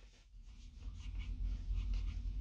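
A pause with only a faint low rumble inside a car, building about a second in, with faint rustling over it.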